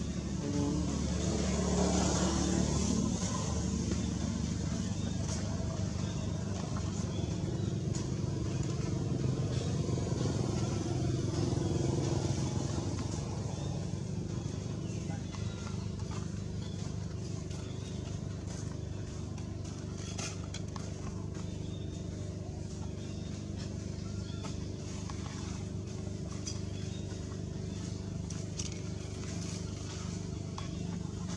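A motor engine running steadily, louder during the first half and easing off after about thirteen seconds, with voices in the background.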